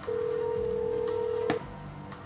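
A phone's call tone as heard by the caller: one steady beep about a second and a half long, cut off by a click.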